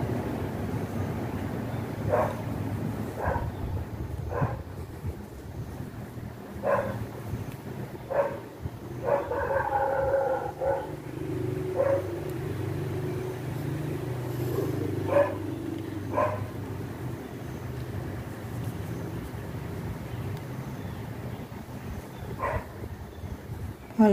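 Steady low background rumble, with about ten short, sharp pitched calls scattered through it at irregular intervals and one longer held call about nine seconds in.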